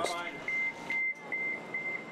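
Door-closing warning beeps of an agilis regional train: a high beep repeated about two to three times a second as the doors close.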